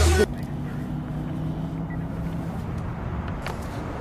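Background music cuts off about a quarter second in, leaving a steady low rumble of city street traffic.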